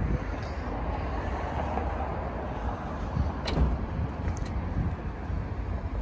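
Steady outdoor background noise, a low rumble with a faint hiss, with one light click about three and a half seconds in.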